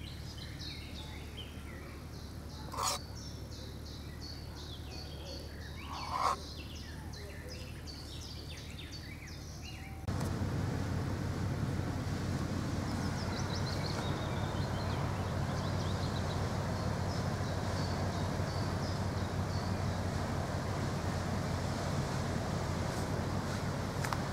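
Small birds singing in quick repeated chirps, with two short louder calls about three and six seconds in. About ten seconds in the sound switches to a steady, louder outdoor rush with faint bird chirps over it.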